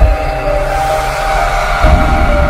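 Channel-intro sting: a held electronic chord with a swelling whoosh, then a deep boom just before the end.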